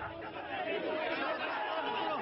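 A crowd of people talking over one another, many voices overlapping in a dense, steady chatter.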